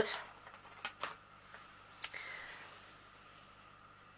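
Faint handling noise from hands on a diamond painting: a few soft clicks and a brief light rustle. It is quiet overall.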